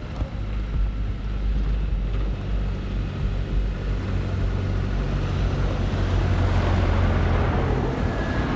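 A motor vehicle driving on a snow-covered road, its engine hum and tyre noise growing louder as it approaches and passes close by near the end, over a steady low rumble.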